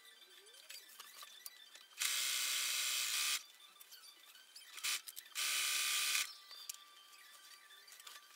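Brother Innov-is electric sewing machine running in two short bursts, the first about a second and a half long and the second under a second, as it zigzag-stitches elastic onto fabric. A small click comes between the runs.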